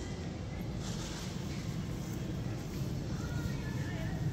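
Steady outdoor background noise, mostly a low rumble, with no distinct events; a faint thin tone comes in near the end.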